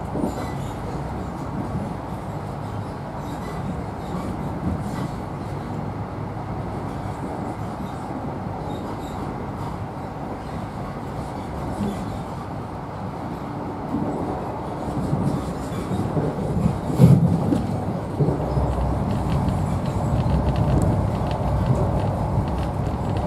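Running noise of an InterCity 125 (Class 43 HST) Mark 3 passenger coach at speed, heard from inside the carriage: a steady low rumble of wheels and bogies on the track. It grows louder in the second half, with a sharp bump about 17 seconds in.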